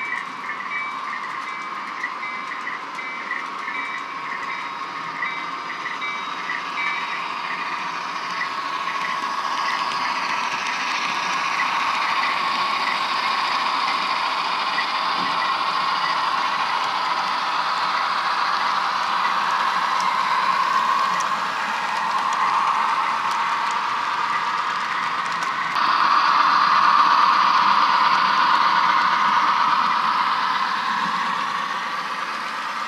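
HO scale model diesel locomotives running on the layout track, a steady mechanical running noise that grows louder and steps up near the end. A repeated high ding, a few times a second, sounds through the first third and then fades.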